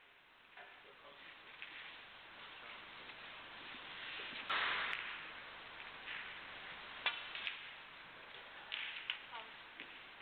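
Snooker balls clicking sharply as they strike each other on the table, once about seven seconds in and again around nine seconds, over the low background noise of the arena. About four and a half seconds in there is a short, louder rush of noise.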